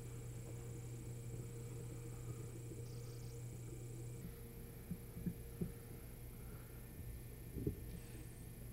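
Steady low hum with a faint hiss, joined by a few soft knocks in the second half.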